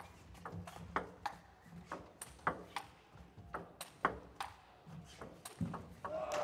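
Table tennis rally: the ball clicks sharply off the table and the bats in quick alternation, about three hits a second.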